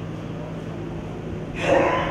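A steady low hum throughout, and about one and a half seconds in a short, loud, breathy vocal sound from a person.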